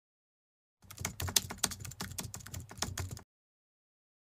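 Rapid, irregular clatter of keyboard typing, a quick run of key clicks lasting about two and a half seconds that starts just under a second in and stops abruptly.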